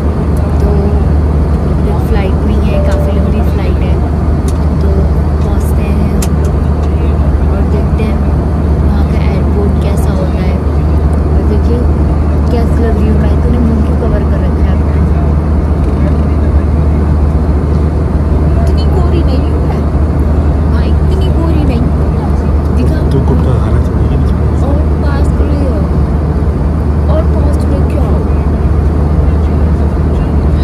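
Loud, steady low drone of a moving vehicle heard from inside its cabin, with faint voices over it.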